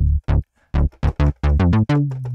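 Electronic UK-garage-style beat with a quick run of short drum hits and a synth bass note D played from a keyboard over it.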